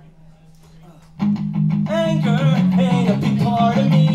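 Electric guitar played through an amplifier, breaking into loud strummed chords about a second in after a brief lull.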